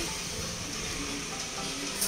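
Bare hand mixing raw chicken pieces into a curd-and-spice marinade in an aluminium pot: a steady wet stirring noise, with faint background music.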